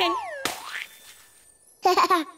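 Cartoon sound effects: a springy boing that glides down and up, then a sharp hit about half a second in with a falling whistle after it. A baby's short giggle comes near the end.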